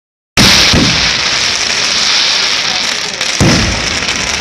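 Aerial fireworks going off: a sudden bang cuts in after a moment of silence and runs on as a dense crackling hiss, with another loud burst near the end.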